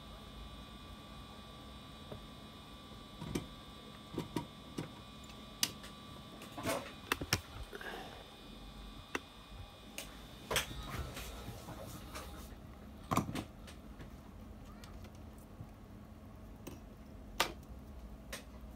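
Scattered light clicks and taps of small tools and parts being handled on a phone-repair workbench. Under them a faint steady high whine runs until about two-thirds of the way through, then stops.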